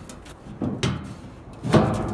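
Metal evaporator pan being handled over its concrete-block firebox: two sliding knocks and scrapes, the louder one near the end.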